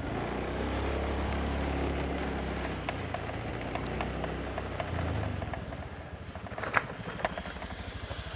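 Small motor scooter engine running as it approaches with a steady low hum, dropping about five seconds in to a lower, pulsing idle as it pulls up. A brief high-pitched sound comes near the end.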